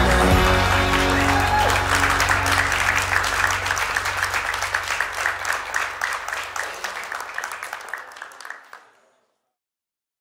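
Applause from a crowd over background music, both fading out to silence near the end.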